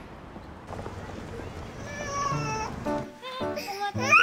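Low city traffic rumble, then a baby starts whimpering and fussing about halfway through, in wavering cries that grow louder and break into crying at the end.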